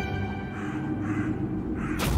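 Crow cawing about three times over a low, sustained drone of background music.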